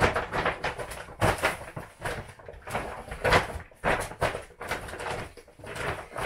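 Plastic shopping bag being handled and folded, rustling and crinkling in quick irregular bursts.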